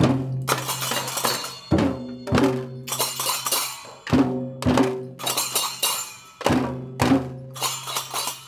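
A group of young children strike small hand cymbals and hand drums together. The sharp strokes come in groups about half a second apart, with brief gaps between groups, and each stroke rings on.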